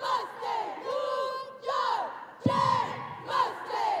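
A cheerleading squad shouting a cheer together in short, rhythmic words, with a sharp thump about two and a half seconds in.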